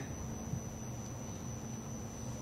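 A pause in speech: low room noise with a faint, steady high-pitched whine running through it.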